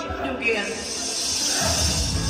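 Karaoke backing track starting over loudspeakers, with a hissing wash in the highs building from about half a second in and voices over it.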